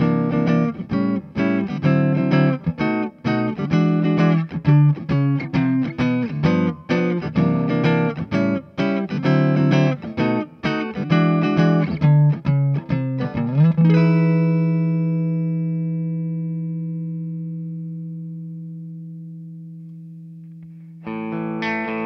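Jazzmaster-style electric guitar fitted with Stonewall Fat Jazzmaster pickups, played on its rhythm circuit (the neck pickup with its own preset volume and tone). It plays a rhythmic picked chord passage, then lets a final chord ring and fade slowly from about two-thirds of the way in. A new passage begins just before the end.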